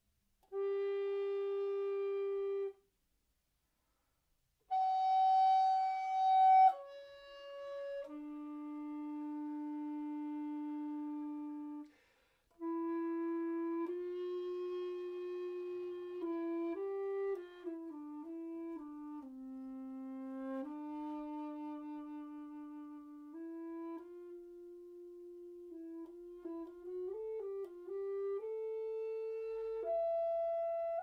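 Mollenhauer Helder tenor recorder playing slow, held single notes: a short note, a pause, then a loud, breathy note swelling about five seconds in, followed by a long low note and a softer continuous phrase of held notes with a few quick turns of pitch.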